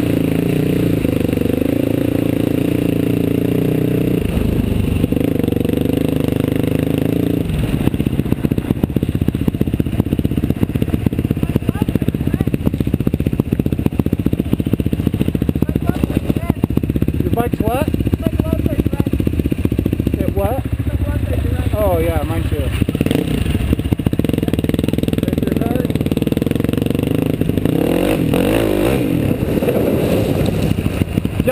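Quad (ATV) engine running loud and close while being ridden over a bumpy dirt trail, with clatter from the ride. The engine note holds steady for about the first seven seconds, then turns rough and jittery. The engine rises and falls in pitch a couple of times: once a little past halfway, when a second, smaller youth quad rides alongside, and again near the end.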